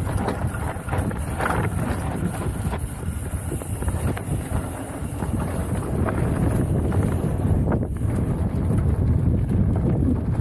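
Mountain bike rolling fast down a dirt trail: wind buffets the action camera's microphone over tyre roar on the dirt, with a constant clatter of small knocks and rattles from the bike.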